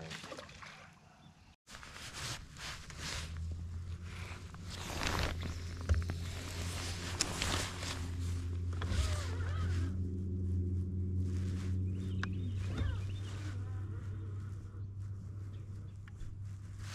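Electric bow-mount trolling motor humming steadily as the bass boat moves, its tone shifting for a couple of seconds past the middle. Short clicks and rustles of the spinning rod and reel being handled sit on top.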